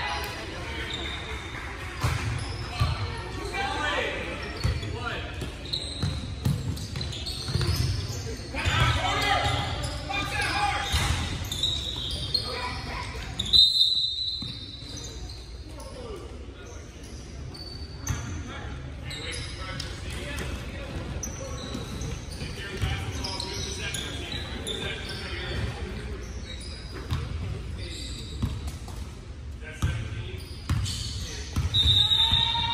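Basketball game on a hardwood court: the ball bouncing and players' and spectators' voices, echoing in a large gym.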